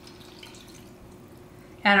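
Milk poured from a glass measuring cup into a stainless steel pot of drained, cooked macaroni: a faint, soft pouring sound.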